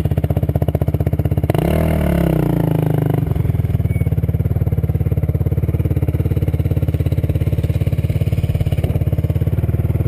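Single-cylinder four-stroke ATV engine running close by with a steady, even thump. The throttle is blipped briefly about two seconds in, with the pitch rising and then falling back.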